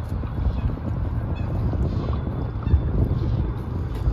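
Wind buffeting the microphone outdoors: a steady low rumble with no clear event in it.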